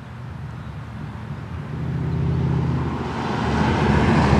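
1960 Chevrolet Bel Air with a 6.2-litre LS3 V8 approaching along the road, its engine and road noise growing steadily louder as it nears and reaches the passing point.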